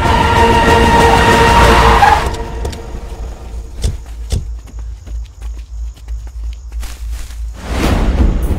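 Film soundtrack: choral music cuts off about two seconds in, leaving the low rumble of a car engine and a couple of sharp knocks, before loud music comes back near the end.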